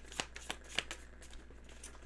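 A tarot deck being shuffled by hand: a quick run of crisp card snaps and rustles that thins out after about a second.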